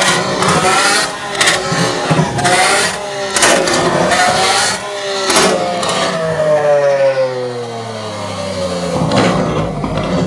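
Lamborghini Aventador V12 with an IPE exhaust revving hard in repeated blips, with sharp exhaust bangs as it shoots flames. Later the revs fall away in one long drop, followed by another bang.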